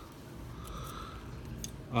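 Faint light clicks and taps of thin fiberglass pole sections being handled and set down on a tabletop.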